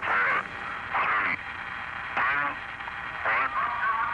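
Voice transmissions over a mission-control radio link, thin and band-limited: several short spoken calls, one after another with brief gaps.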